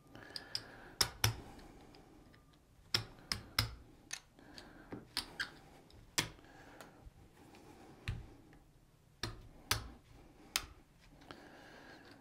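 Casino chips clicking as they are picked up, stacked and set down on a craps table layout: irregular sharp clicks, a few close together at a time, with short pauses between.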